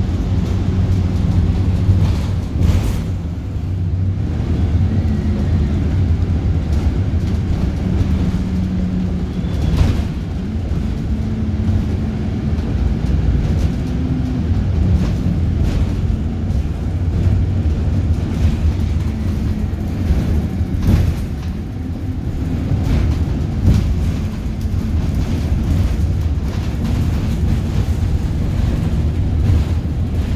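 Stagecoach bus heard from inside the passenger saloon: a steady low engine drone whose note rises and falls a little, with a few sharp knocks and rattles from the body.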